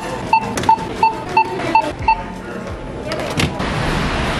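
Self-checkout barcode scanner beeping seven times in quick succession, about three beeps a second, as items are scanned. Then a single knock and a steady low hum.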